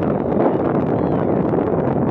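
Wind on the microphone: a loud, steady rush of noise.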